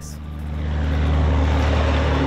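A steady low engine hum with rushing noise, growing louder over the first second and a half.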